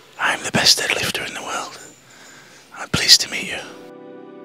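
A man's voice in two short, indistinct spells with a lot of hiss, spoken close into a handheld microphone. Steady music comes in near the end.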